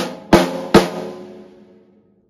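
Drum kit played with sticks: three strokes about 0.4 s apart, the last two louder, closing a right-left-left-right-left phrase with its final notes accented. The drums and cymbals then ring out and fade over about a second.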